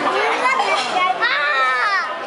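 Young children's voices as they play, with one child letting out a long, high-pitched excited cry in the second half.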